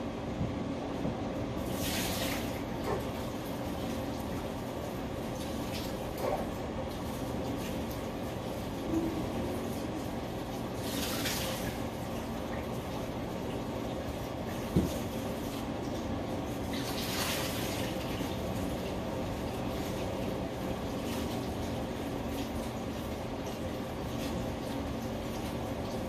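A steady low hum runs throughout. Three short hisses come about two, eleven and seventeen seconds in, and a single soft thump comes near fifteen seconds.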